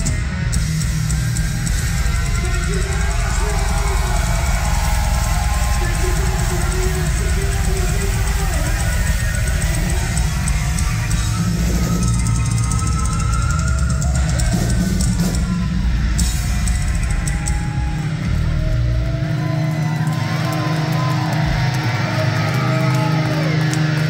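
A heavy metal band playing live and loud: distorted electric guitars, bass guitar and a drum kit, with moving guitar lines on top. The deepest bass thins out a few seconds before the end.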